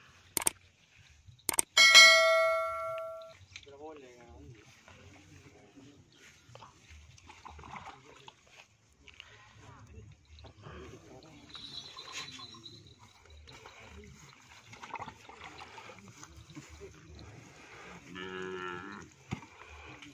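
A click and then a bright bell chime that rings for about a second and a half near the start, the sound of a subscribe-button animation. It is followed by faint movement sounds around the cattle, and a bull mooing briefly near the end.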